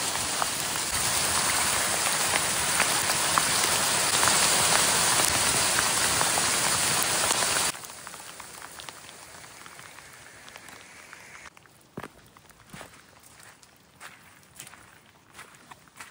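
Hail pelting a blossoming peach tree and a grassy slope: a dense hiss of small impacts with many sharp ticks. Roughly halfway through it drops abruptly to a much quieter patter with scattered ticks.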